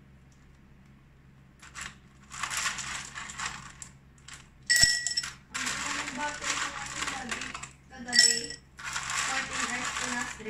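A spoon scooping tapioca pearls from a plastic tub and dropping them into a tall glass of ice cubes: scraping and rattling in several stretches, with a sharp ringing clink against the glass about five seconds in and another shorter one near the end.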